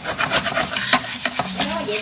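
Bánh xèo crepe sizzling in oil in a frying pan while a spatula scrapes under it and folds it over, in many quick scraping strokes.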